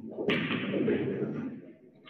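A sharp knock about a quarter second in, followed by about a second of noise that fades away.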